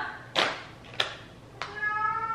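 A pet cat meowing: one drawn-out call begins near the end, after a brief rustle and two light taps.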